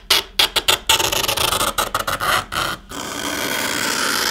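Razor blade scraping lines into the metal back panel of a Vivo X20 Plus phone: a quick run of short scratchy strokes, then one longer, steady scrape near the end.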